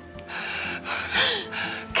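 A woman crying, with gasping sobbing breaths, over soft background music.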